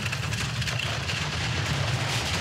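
A four-man bobsleigh running down the ice track, its steel runners making a steady rumble and hiss on the ice.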